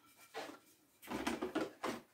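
A stiff cardboard pattern being handled and turned over: a few short scrapes and rustles, the longest between one and two seconds in.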